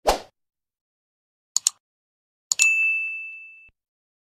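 Sound effects for an animated 'like' button. A short whoosh comes as it appears, then a quick double click about a second and a half in. A second double click follows, with a single high ding that fades over about a second.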